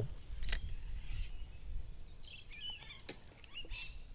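Small birds chirping in a quick run of high, wavering calls a little past halfway, with a few soft clicks and a low rumble underneath.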